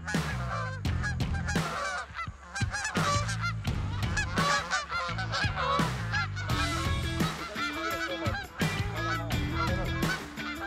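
A flock of Canada geese honking, many short calls overlapping continuously.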